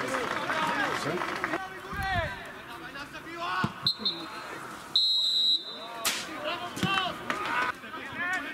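Outdoor football match sound: men shouting across the pitch and the thud of the ball being kicked. A referee's whistle is blown twice, a short blast about four seconds in and a longer one about a second later.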